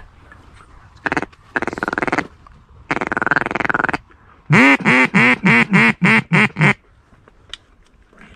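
Duck call blown close by: three drawn-out buzzy notes, then a fast run of about eight loud quacks, each dropping in pitch, in the cadence of a hunter calling in mallards.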